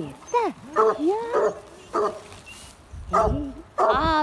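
Griffon Nivernais puppies yapping and yelping in short, high rising-and-falling calls as they pull at a dead wild boar. Several calls come close together in the first second and a half, then a quieter stretch, then another yelp near the end.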